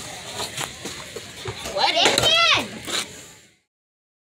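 Children's voices outdoors, with a high-pitched child's squeal rising and falling about two seconds in, over knocks and rubbing from the phone being handled against clothing. The sound cuts off abruptly about three and a half seconds in.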